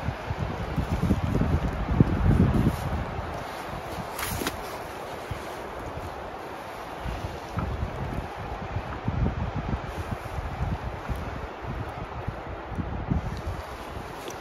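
Wind buffeting the microphone in irregular low gusts, over a steady hiss of wind through the grass and pines. A single short click comes about four seconds in.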